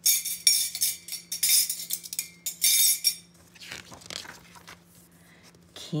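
Spoons clinking against teacups, a quick run of bright, tinkling metal-on-china clinks with a short ring for about three seconds. Near the end comes softer rustling as a book page turns.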